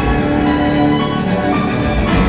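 Live instrumental ensemble music with sustained bowed-string notes over a steady low bass, heard from far back in a concert hall.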